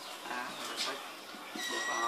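Marker pen squeaking on a whiteboard while writing, a brief high steady squeal near the end, over faint background voices.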